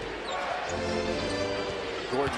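A basketball being dribbled on a hardwood arena court, over held notes of arena music.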